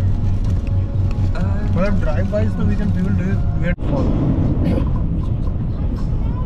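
Steady low rumble of a car driving, heard from inside the cabin, with a voice over it in the middle and a brief drop-out about two-thirds of the way through.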